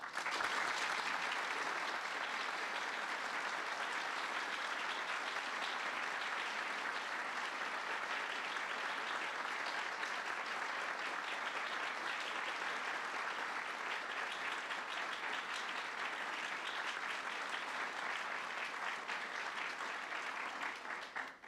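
Audience applause, breaking out all at once and holding steady.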